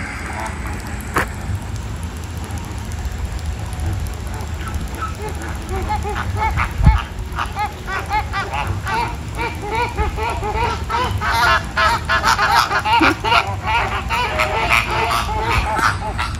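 A flock of flamingos honking, goose-like calls that start sparse and grow dense and super loud from about six seconds in, many birds calling over one another. A single low thump comes about seven seconds in.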